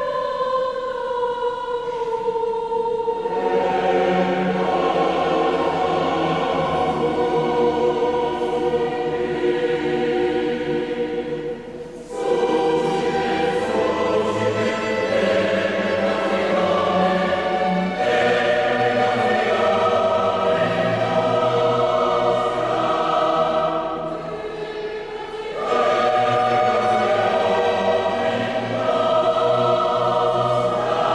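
Choir singing sacred choral music in long, sustained phrases. The singing breaks off briefly about twelve seconds in, and the voices come back fuller after a softer passage near the end.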